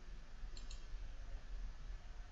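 Two quick computer mouse clicks about half a second in, over a low steady hum.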